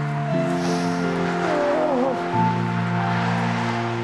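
Slow, soft background music: sustained chords that change about every two seconds, with a melody line that bends up and down in pitch near the middle.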